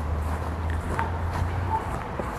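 Quiet outdoor background with a low, steady rumble that stops shortly before the end, and a single faint click about halfway through.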